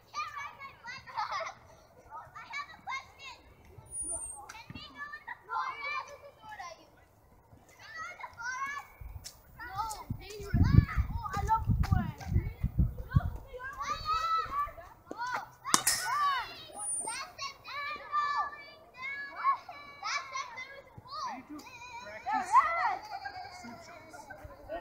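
Children's voices shouting and calling throughout, with a low rumble for a few seconds from about ten seconds in and a single sharp knock about sixteen seconds in.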